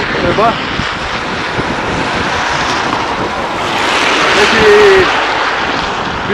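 Wind buffeting the microphone, a loud steady rushing noise that swells to its loudest about four to five seconds in.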